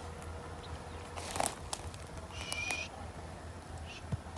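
A short, high, steady animal call lasting about half a second near the middle, with a brief rustle a moment before it, over a low steady background.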